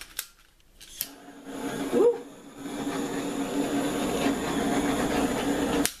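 Handheld butane torch: a couple of clicks near the start, then the flame burning with a steady hiss from about two and a half seconds in, played over wet acrylic paint to pop air bubbles, cut off suddenly just before the end.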